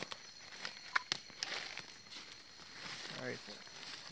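Dry leaf litter and twigs rustling and crackling as a snake is set down in the undergrowth, with a couple of sharp snaps about a second in. A steady high insect drone continues behind.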